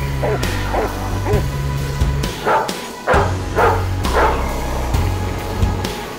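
Dogs snarling and barking in a fight, a run of short calls that is loudest in the middle, over dramatic background music.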